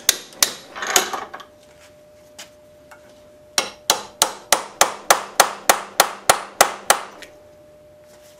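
Hammer striking a steel punch held against a clutch Z-bar clamped in a vise, driving out a pressed-in splined insert. A few blows at the start, two light taps, then an even run of about a dozen blows at roughly three to four a second, with a faint metallic ring between them.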